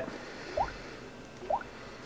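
Two short rising blips about a second apart, each with a soft thump: fingertip taps on a Samsung Galaxy Tab 3 touchscreen while moving through folders in a file manager.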